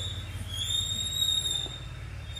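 Insects in the surrounding forest giving a steady high-pitched whine that wavers slightly in pitch, over a low rumble.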